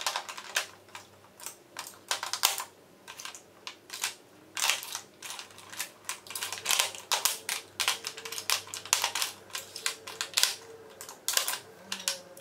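Lipstick and lip gloss tubes clicking and clattering against each other and a clear acrylic organizer tray as they are picked up and set down in rows, in many quick, irregular taps.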